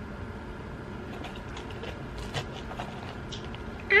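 Faint clicks and light scrapes of a metal fork working in a disposable salad bowl, over steady room hum, with one slightly louder click about halfway through. Right at the end comes a short, loud 'ay' whose pitch falls.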